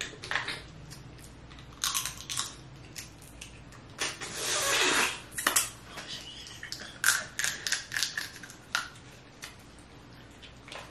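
Cooked Dungeness crab leg shells being cracked and picked apart by hand, with the meat sucked out: irregular sharp cracks and snaps, with a longer scraping stretch about four seconds in and a quick run of snaps near the end.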